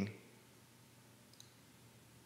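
A man's spoken word trails off at the very start, then near silence: quiet room tone with one faint click about halfway through.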